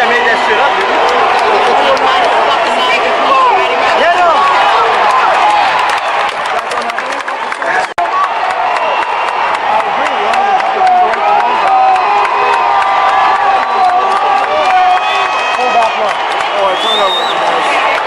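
Large football stadium crowd: many voices talking and shouting at once, loud and steady, with a momentary break about eight seconds in.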